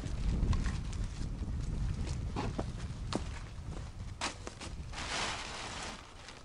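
Footsteps on gravelly ground and a few sharp wooden knocks as lumber is set down on a plastic tarp, with a short rustle near the end.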